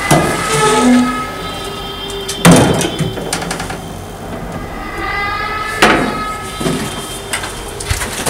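Three heavy blows about two and a half to three seconds apart, each followed by a ringing of several steady tones that dies away over a couple of seconds.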